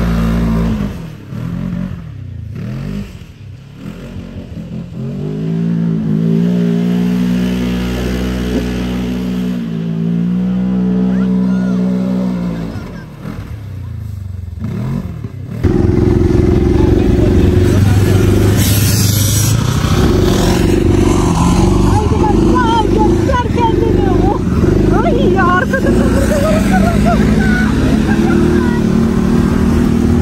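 Off-road side-by-side buggy's engine running as it drives across a grassy field, its pitch rising and falling with the throttle. About halfway through it cuts to a louder, steadier engine sound heard from aboard a quad ATV, with wind noise on the microphone.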